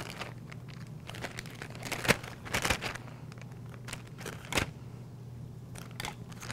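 Clear plastic specimen bag crinkling as it is opened and blood culture bottles are slipped into it, in several short rustles, loudest about two and a half seconds in and again past four seconds.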